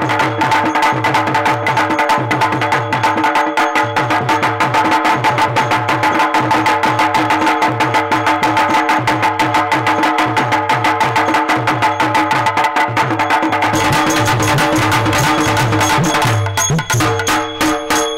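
Live Tamil stage-drama dance music: fast drumming with rapid wood-block-like clicking over a sustained held chord, the drum pattern shifting about fourteen seconds in.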